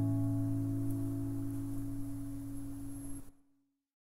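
The song's final guitar chord ringing out and slowly fading, cut off to silence about three seconds in.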